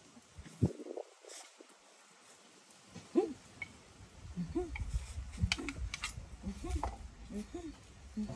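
A woman murmuring short, low "mm" hums, many in a row from about three seconds in, over a low rumble and a few sharp clicks.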